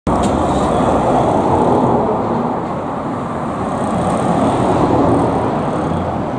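Road traffic on a multi-lane city street: cars passing in a steady rush of tyre and engine noise that swells as vehicles go by, about two seconds in and again near five seconds.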